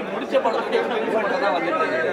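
Several people talking over one another: overlapping chatter with no single clear voice.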